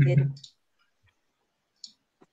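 A voice ending a spoken farewell in the first half-second, then quiet broken by a single faint, sharp click near the end.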